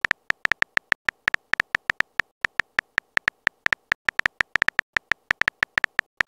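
Phone keyboard tap clicks from a texting-story app, a quick, slightly uneven run of short ticks, about six a second, as a message is typed out letter by letter.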